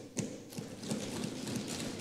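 A sharp knock near the start, then low, steady room noise heard through the chamber microphones.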